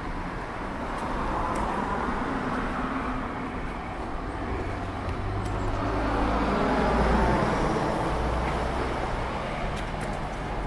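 Road traffic passing close by: vehicle engine and tyre noise swells and fades twice. The first pass comes about two seconds in, and a louder one with a deeper rumble comes around seven seconds.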